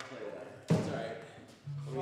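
A single loud, hollow thump with a short low ringing tail, about two-thirds of the way in: an acoustic guitar's body knocking against something as it is picked up and carried to a stool.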